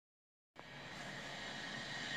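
Dead silence for about half a second, then a steady low hiss of background noise with no distinct event.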